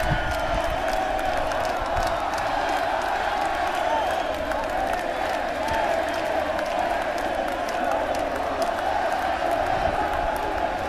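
A large concert crowd of thousands chanting and cheering loudly together, a dense, wavering mass of voices, with scattered claps and whoops.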